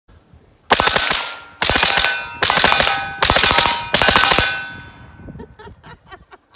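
Rapid fire from a short-barrelled 5.56 AR with a PSA 7-inch upper: five quick strings of shots in close succession, each followed by a metallic ringing, the last dying away about four and a half seconds in.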